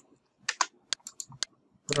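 Computer mouse and keyboard clicks: about half a dozen short, separate clicks, with near silence between them, as text is pasted in through a right-click menu.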